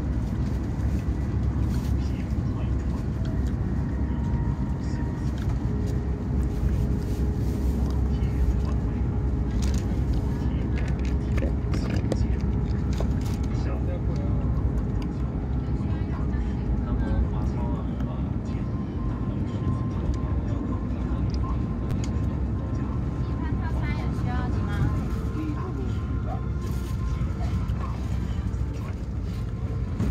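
Steady low rumble of a CRH380A high-speed electric train at speed, heard from inside the passenger car, with a faint steady hum over it.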